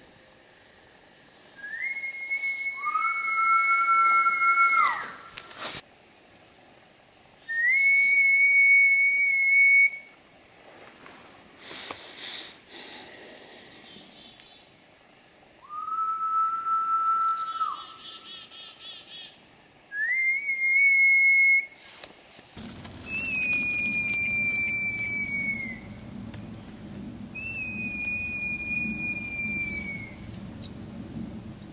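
A series of seven long, steady whistled tones, each held for two to three seconds, alternating between a higher and a lower pitch; two overlap near the start, and the last two sag slightly in pitch as they are held.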